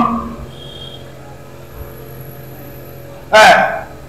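A man's voice stops just after the start, leaving about three seconds of quiet room tone with a low steady hum. A brief spoken word comes near the end.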